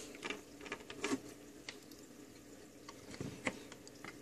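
Faint, scattered small clicks and handling noises as multimeter test leads are picked up and their plugs are pushed into the meter's input jacks.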